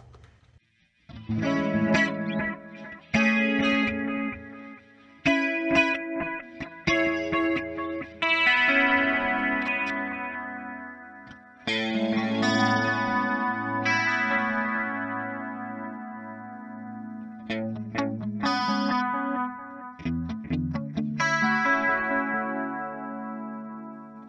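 Electric guitar played through the Hotone Ampero Mini's 'Sweetie' delay on its 'Clean 80's' patch, set to 450 ms with mix 40 and feedback 50. It plays chords and single notes starting about a second in, each trailed by echoing repeats.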